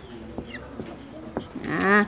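A cow mooing once, briefly, near the end, a short call rising slightly in pitch. Before it, a few faint taps of a marker on a whiteboard.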